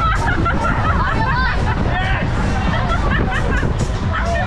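Many riders' voices shouting and chattering at once on a swinging KMG Speed Booster fairground ride, over fairground music and a steady low rumble.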